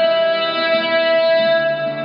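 A man's voice singing one long held note over an acoustic guitar, in an empty concrete parking garage.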